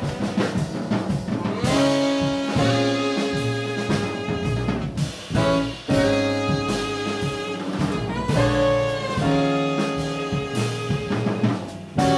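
Live jazz quartet: a baritone saxophone plays long held melody notes in phrases over piano, upright bass and a drum kit with cymbals.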